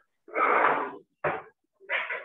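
Breathy, unpitched sounds from a person: a loud exhale-like burst lasting well under a second, then a short puff, and another starting near the end.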